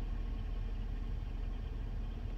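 Steady low rumble inside a car's cabin, with the engine idling.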